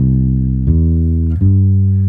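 Electric bass guitar playing the notes of a C major triad one after another, C, then E, then G, rising, each about two-thirds of a second long, the last one left ringing.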